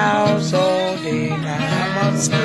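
Blues music: acoustic guitar playing steady sustained notes over a repeating low bass note, with no singing.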